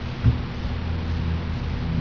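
Low steady background rumble and hum, with a brief soft thump about a quarter second in.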